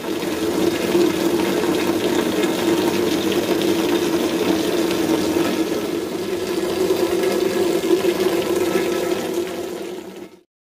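A steady stream of water pouring off a roof edge and splashing down, a continuous rushing and splashing.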